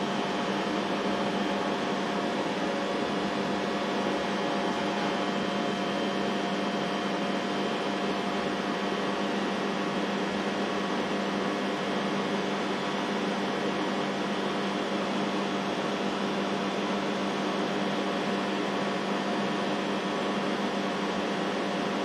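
Steady machinery and ventilation hum: an even rushing noise with several steady tones running through it, unchanging in level.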